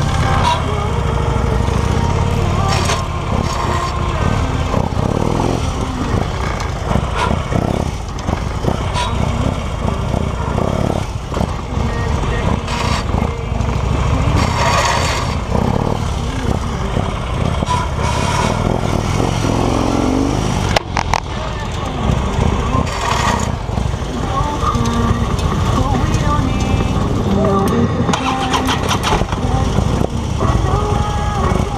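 Police motorcycle engine running at low speed, the throttle opening and closing as the bike weaves through a tight cone course.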